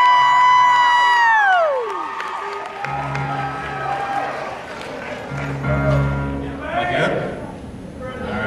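A high, drawn-out "woo" from the audience that rises, holds and falls away over the first two seconds. Then piano chords are struck and left to ring, one about three seconds in and another about five seconds in, over crowd chatter.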